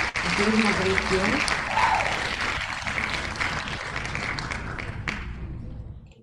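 Crowd applause sound effect for a winner announcement. It cuts in as the spinning-wheel music stops and fades away over about five seconds, with a few voices in it in the first two seconds.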